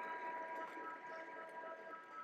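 Electric meat grinder running steadily under load, grinding venison through the fine plate, with a faint steady high whine.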